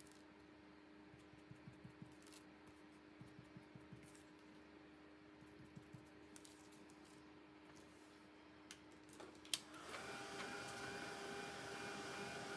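Near silence with faint small brush strokes, then a click, and about ten seconds in a hand-held hair dryer starts and runs steadily, drying the freshly stencilled paint.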